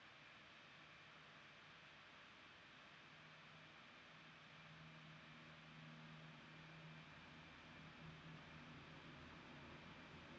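Near silence: faint steady hiss of room tone, with a faint low hum coming in a few seconds in.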